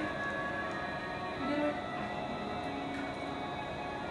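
Music with long held notes, playing steadily with no speech over it.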